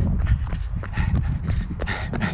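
Running footsteps of Hoka Mach 3 road shoes striking wet pavement, about three strides a second, over a low rumble of wind on the camera microphone.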